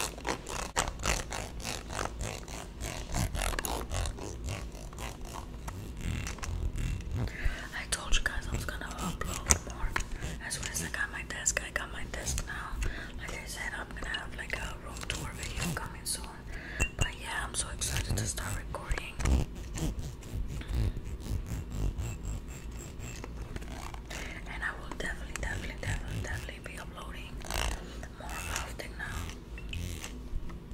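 Fingernails tapping and scratching on a Versace Eau Fraîche perfume bottle, in quick, dense clicks, with soft whispering mixed in through the middle stretch.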